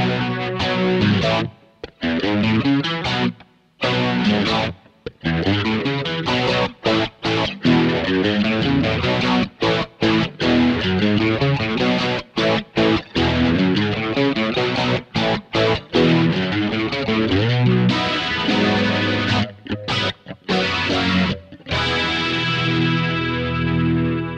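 Fender Stratocaster electric guitar played through an Electro-Harmonix Stereo Electric Mistress flanger/chorus pedal: choppy chords cut off by short stops, then one long ringing chord near the end.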